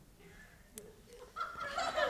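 A short hush, then laughter from the theatre audience starting up about one and a half seconds in and growing louder.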